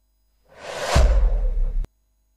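A whoosh transition sound effect marking the cut to an instant replay: a hiss swells up over about half a second into a deep booming bass and cuts off suddenly near the end.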